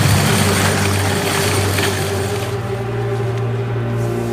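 Dark film score of sustained low drones, with a loud hissing rush of noise over them that cuts off about two and a half seconds in.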